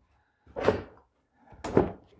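Pontiac Solstice's plastic inner fender liner being flexed and pulled out of the wheel well: two short scrapes of plastic rubbing on the car, about a second apart.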